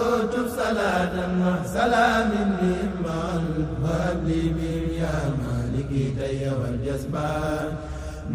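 An Arabic devotional poem (a Mouride xassida) chanted in long, drawn-out, slowly bending notes.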